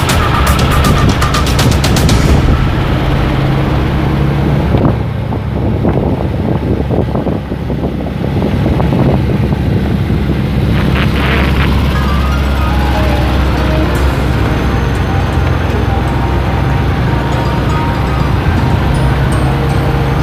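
Background music playing over the steady low drone of an open Volkswagen Type 181 driving along a road.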